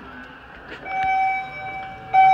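Elevator's electronic signal tone sounding one steady pitch, starting about a second in and held for about a second.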